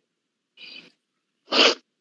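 A person sneezing: a faint lead-in sound about half a second in, then one short, loud sneeze about a second and a half in.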